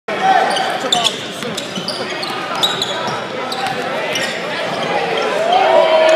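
A basketball dribbled on a hardwood gym court, with the voices of players and spectators throughout.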